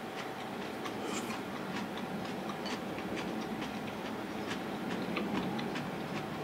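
Close-up eating sounds of a person chewing yakisoba noodles with cabbage and menma: a string of small irregular clicks and smacks from the mouth, over a faint steady hum.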